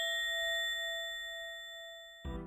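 A single bell-like ding sound effect, struck once just before and ringing out with a clear, steady high tone that slowly fades away.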